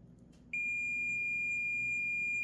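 AstroAI AM33D digital multimeter's continuity buzzer giving one steady, high-pitched beep that starts about half a second in, as the two probe tips touch. The beep shows a closed circuit between the tips, confirming the test leads are working properly.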